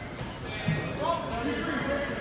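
Distant voices of spectators and coaches echoing in a large gymnasium, with no voice close by.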